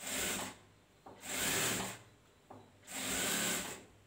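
Industrial sewing machine stitching in three short runs, each under a second, stopping and starting as the fabric is fed and turned, with a short click before the last run.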